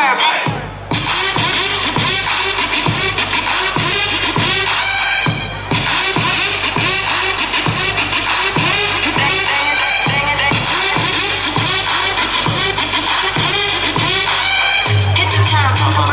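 Hip-hop dance music with a steady beat of about two strokes a second and vocal samples. It briefly drops out about half a second in, and a heavy bass comes in near the end.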